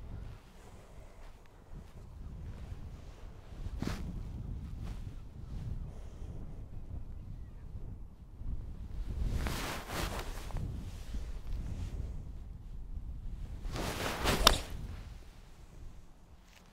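A golf club swung at a ball on the fairway and striking it cleanly: a swish ending in one sharp click about a second and a half before the end, the loudest moment. A similar swish comes about nine seconds in, and wind rumbles on the microphone throughout.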